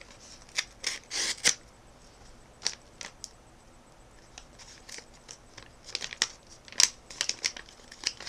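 A paper mailing envelope being handled and torn open by hand: a series of short paper rustles and rips, the loudest cluster about a second in.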